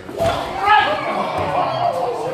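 A brief thump just after the start, then raised voices in a large, echoing hall: a loud exclamation peaks a little under a second in and trails off as a sparring exchange ends in a point.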